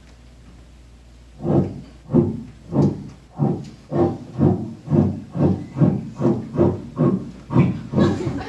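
A voice making a short, pitched sound over and over in a quick, even rhythm, about two and a half times a second, starting about a second and a half in.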